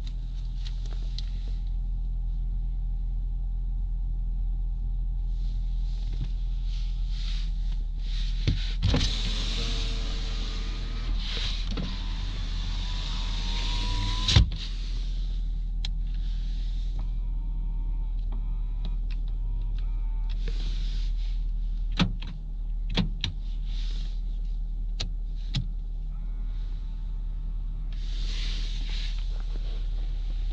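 Nissan Juke's 1.6-litre engine running with a steady low hum inside the cabin while electric motors work: about nine seconds in, a power-window-type motor whines for about five seconds, rising in pitch, and stops with a knock. Later come shorter motor whirs, from the power mirror being adjusted, and a few switch clicks.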